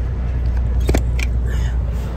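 Semi truck's diesel engine idling, a steady low rumble heard from inside the cab, with a sharp click about a second in.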